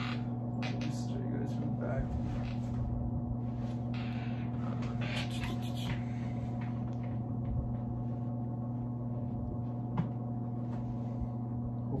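A steady low hum with a stack of overtones runs throughout, with faint rustling and handling of backpack straps and coated canvas over the first half as the bag is worn and adjusted, and a single light click about ten seconds in.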